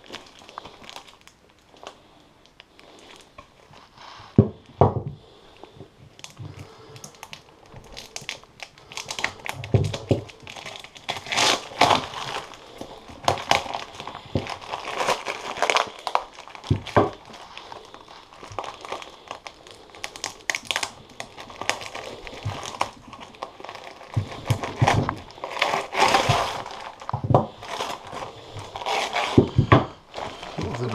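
Newspaper packing being crumpled, unfolded and handled, an irregular run of crinkling and rustling with some tearing. There are a few sharp knocks in among it, the first about four and a half seconds in.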